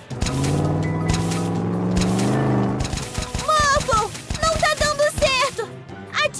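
Cartoon creature vocal sounds without words: a long low grumbling hum lasting about three seconds, then a run of short high squeaky chirps and babble.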